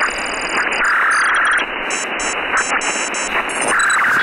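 Sci-fi electronic sound effects: rapid trains of high chirping beeps, like a starship console's computer, over a loud, steady static-like hiss. A brighter tone swells out of the hiss about a second in and again near the end.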